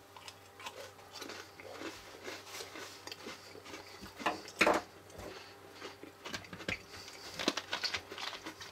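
A person chewing a bite of a Pepsi-soaked Oreo cookie, with irregular soft crunches and one louder crunch a little before the five-second mark.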